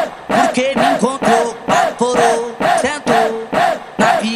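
Brazilian funk automotivo remix: a rhythmic beat of about four hits a second under chopped, chanted vocal samples, without the deep bass kick.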